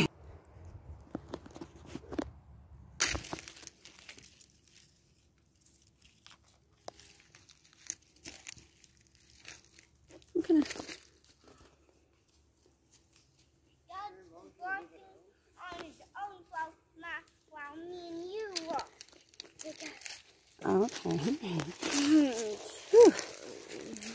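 Footsteps crunching and crackling through dry leaf litter, in scattered short steps with pauses, with quiet voices in the second half.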